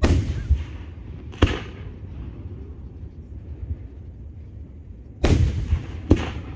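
Aerial firework shells bursting: a loud boom at the start, a sharper crack about a second and a half later, and another loud boom near the end, each trailing off quickly.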